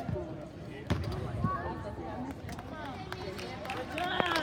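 Several people's voices talking indistinctly in a large arena, with two dull thumps, one at the start and another about a second later.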